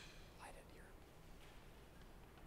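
Near silence: room tone with a faint whispered voice for a moment about half a second in.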